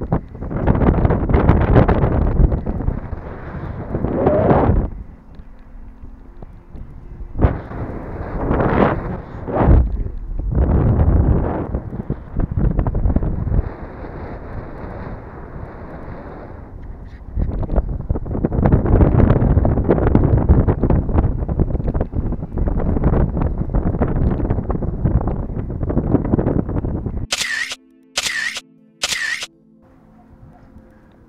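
Wind buffeting the camera microphone in loud, uneven gusts, with some handling rustle. Near the end come three quick, high-pitched chirps, each falling sharply, with short silences between them.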